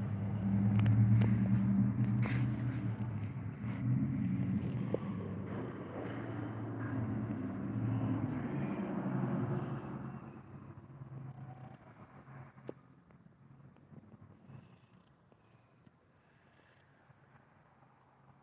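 A vehicle engine running at a steady low pitch, fading away between about ten and fourteen seconds in, with a few faint knocks.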